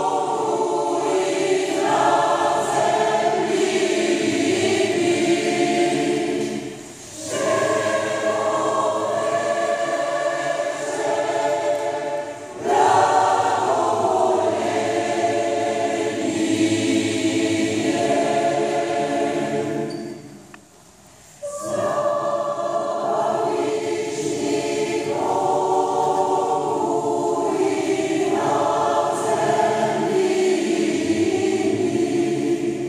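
A large mixed choir of about 180 men and women singing sustained chords in long phrases. The singing breaks briefly about a quarter of the way in, drops away again about two-thirds through and comes back abruptly.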